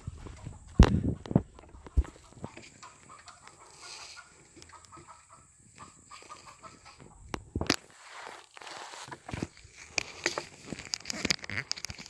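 Handling noise from a covered phone microphone jostled during a climb: rubbing and rustling with scattered knocks, the loudest about a second in and another near the eight-second mark.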